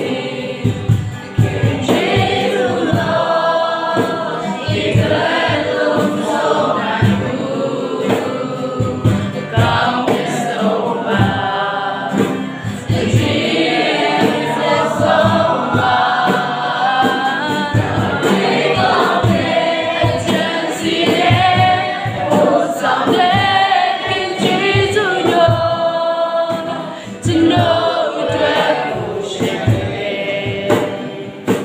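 Live worship song: a woman and a man singing a melody together, accompanied by strummed acoustic guitars and steady hand strokes on a cajón.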